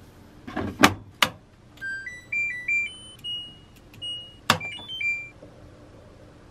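Front-loading washing machine: two or three hard plastic knocks as its detergent drawer is handled and shut. Then the control panel gives a run of short electronic beeps stepping up and down in pitch, broken by one more sharp click.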